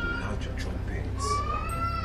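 Long, high-pitched drawn-out cries over a steady low hum: one trails off just after the start, and another rises slowly through the second half.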